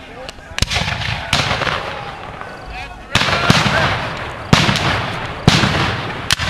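Black-powder muskets firing in a ragged string of sharp shots, roughly a second apart, each trailing off in a rolling echo; the loudest report comes about halfway through.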